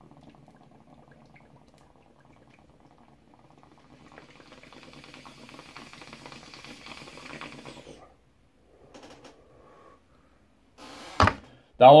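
A person inhaling poppers through the nose from a bottle held to the face: a long, drawn-out breath with a faint hiss that grows louder over several seconds and stops about eight seconds in. A single sharp click comes near the end.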